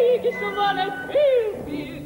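A woman singing with an orchestra, her voice leaping up and sliding back down in pitch several times in a yodel-like way over steady held orchestral notes.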